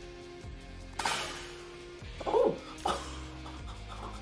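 Background music with steady held notes. About a second in there is a sudden sharp sound, and a little after two seconds a short vocal cry.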